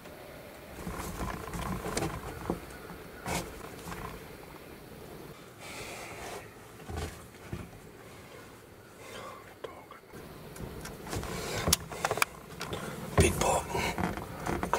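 Low whispering mixed with handling noise: scattered clicks, knocks and rustles from a hunter moving with a rifle in a wooden box stand. The knocks are loudest near the end.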